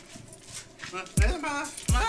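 Experimental electronic dub track: sparse clicks at first, then a sampled voice rising and falling in pitch from about a second in, with heavy kick-drum thumps twice near the end as the beat comes in.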